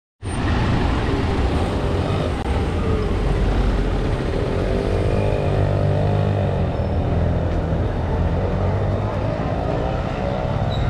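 Street traffic: motor vehicle engines running steadily close by, with a deep, constant rumble.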